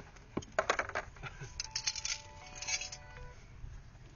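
Loose brass rifle cartridges clinking against each other as they are handled in a pile on a cloth. There are irregular clusters of light metallic clicks, some leaving a brief faint ring, mostly in the first three seconds.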